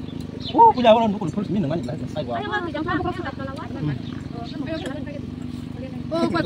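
People talking in a small group, with one loud exclamation about half a second to a second in.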